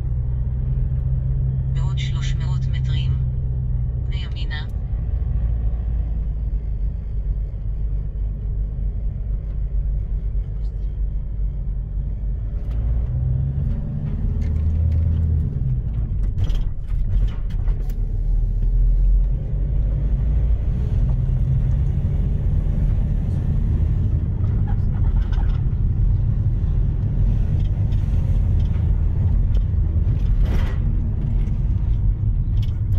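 Car's engine and tyres rumbling steadily from inside the cabin as it drives slowly along a road, with a couple of swells in the low rumble partway through.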